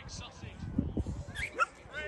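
A dog barking sharply twice near the end, over voices around the pitch.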